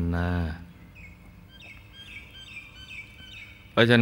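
A small bird chirping faintly in the background: a quick run of short, high chirps for about two seconds during the pause.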